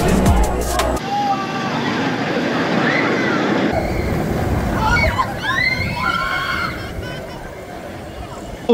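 Water sloshing and splashing as a Vekoma suspended coaster train dips through the lake, with people's voices calling out over it.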